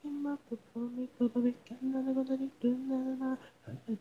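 A woman's voice singing wordless, hum-like notes with no instruments: a string of short and held notes at much the same pitch, separated by brief gaps, with a few quick sliding notes near the end.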